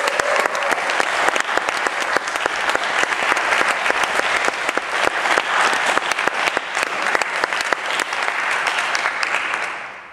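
Audience applauding: dense, steady clapping that dies away near the end.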